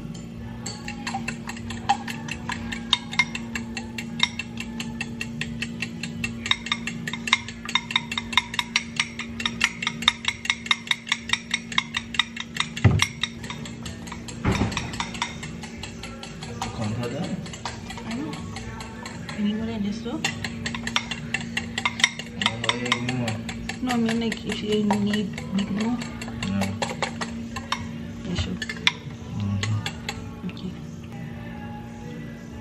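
Fork beating eggs in a glass bowl: a fast run of clinks of metal against glass, densest in the first half and sparser later, over background music.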